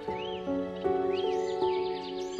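Relaxing background music of held notes that change every half second or so, with short bird chirps mixed over it, several in a quick series about a second in.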